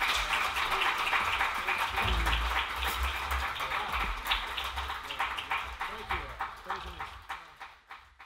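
Audience applauding, with voices among the clapping, the applause fading away over the last couple of seconds.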